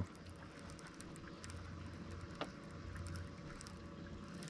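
Faint handling of a baitcasting reel and fishing line: light scattered ticks with one sharper click a little past halfway, over a low, steady background noise.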